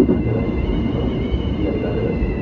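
Tobu 10050 series electric train running on the track, heard from inside the front car: a steady low rumble of wheels on rail with a knock right at the start and a high whine that sinks slightly in pitch.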